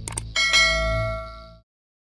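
Two quick clicks, then a bright bell ding that rings and fades out over about a second: the notification-bell sound effect of a subscribe-button animation.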